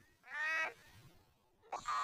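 A short, high, pitched voice-like call of about half a second, electronically warped so that it sounds like a meow or bleat. Near the end a sharp click sets off a gliding tone.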